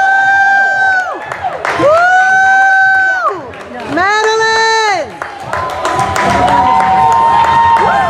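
Spectators cheering with long, high-pitched held 'woo' calls: three loud ones, each swooping up, held about a second and falling away, then several quieter overlapping calls, over crowd noise.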